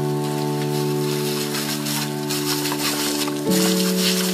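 Hiss and spatter of a garden hose spray nozzle jetting water onto a dog. Underneath is background music of held chords that change about three and a half seconds in.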